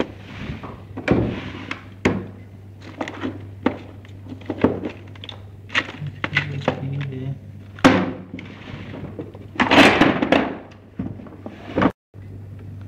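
Irregular knocks and clicks, a dozen or so scattered through, with two short hissing bursts of about a second each, one near the start and the loudest about ten seconds in, over a steady low hum.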